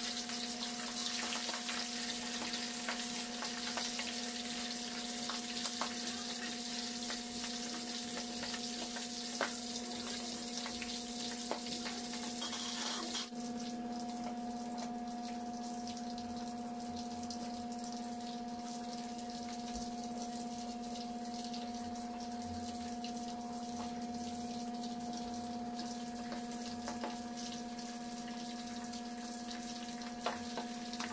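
Bangus (milkfish) frying in oil in a wok: a steady sizzling hiss with a few faint ticks, over a steady low hum. About 13 seconds in, the hiss drops suddenly and stays softer.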